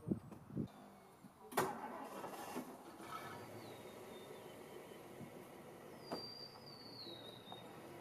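1963 Ford Thunderbird's V8 idling quietly, heard from a distance, as the car sits about to back out of a gravel driveway. A sharp knock about a second and a half in is the loudest sound, and two high whistles falling in pitch come in the middle and near the end.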